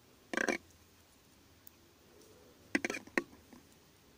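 Metal knitting needles clicking against each other while knit stitches are worked, in two short clusters of clicks: one about half a second in and another, of several clicks, near three seconds in.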